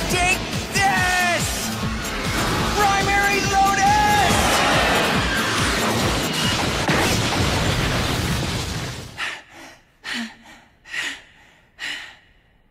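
Anime fight soundtrack: dramatic music and voice-like cries over whooshing effects, building to a crashing impact as a stone floor shatters. The noise cuts off about nine seconds in, followed by four short, separate sounds.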